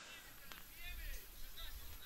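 Faint football-pitch ambience: distant players' shouts around the one-second mark over a low, steady rumble.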